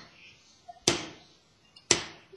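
Single free strokes played with one stick on a snare drum: two sharp hits about a second apart, each dying away before the next. The stick is let to rebound off the head after each hit.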